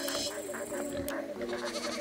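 A man whimpering and moaning softly in distress: a low, wavering, wordless cry.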